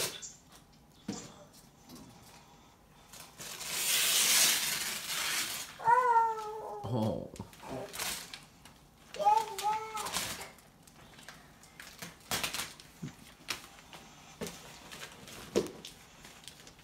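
Gift wrapping paper being torn and rustled off a large present, one long tearing stretch in the middle, with scattered crinkles. Two short, high-pitched vocal calls cut in just after the tearing, the first sliding down at its end.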